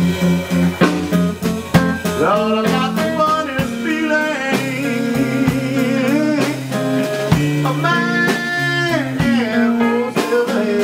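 Live blues band playing: an amplified harmonica, cupped against a handheld microphone, plays a lead line of bent and wavering notes, holding one for about a second near the end. Electric guitar and a drum kit played with sticks back it.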